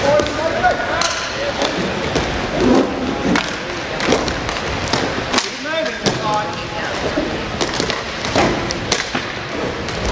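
Inline hockey in play: sticks and the puck clack and knock again and again, with players and spectators shouting over it.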